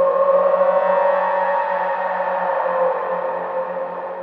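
Background music: a held chord of steady, sustained tones that is loudest at the start and slowly fades.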